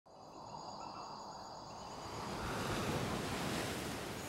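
A rushing noise like wind or surf that swells up over the first few seconds and then holds, with faint high steady tones early on.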